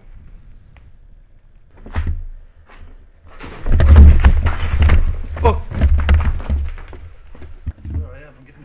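Rumbling, knocking handling noise close to the microphone, loudest in the middle seconds, with muffled voices mixed in.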